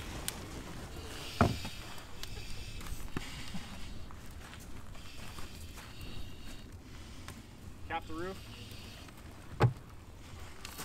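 Fire burning in a small plywood fire-behaviour prop, with a steady low rumble and hiss. Two sharp knocks, about one and a half seconds in and near the end, come as its wooden vent panels are handled.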